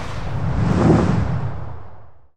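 Logo sting sound effect: a whoosh with a deep rumble that swells to a peak about a second in, then fades away.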